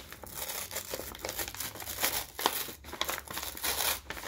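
Brown paper Trader Joe's shopping bag crinkling and crackling as its glued seam is slowly peeled apart by hand, a continuous run of small irregular crackles.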